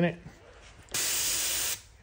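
Airbrush spraying a short burst of paint: a steady hiss lasting under a second that starts about a second in and cuts off sharply.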